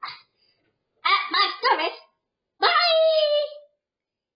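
High-pitched, dog-like yelps: a brief yip at the start, three quick barks about a second in, then one long, slightly falling yowl near the end.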